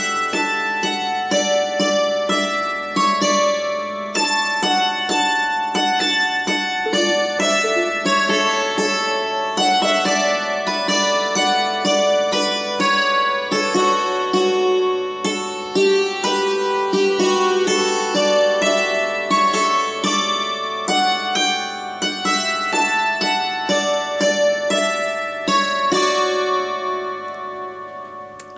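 Hammered dulcimer played with two hammers: a waltz in D, struck notes ringing over one another at a steady three-beat lilt. The playing thins and the last notes fade out near the end.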